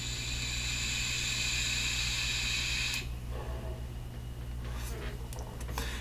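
A long draw of about three seconds on a Horizon Tech Arctic sub-ohm tank: a steady airy hiss of air pulled through the airflow holes past the firing coil. It is a loose draw, loose enough to give a long hit every time.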